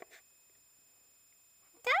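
Near silence: quiet room tone, broken near the end by a person's voice starting to speak.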